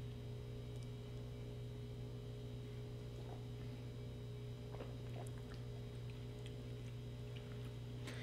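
Steady low electrical mains hum with faint higher overtones in a quiet room, broken only by a few faint soft ticks a few seconds in.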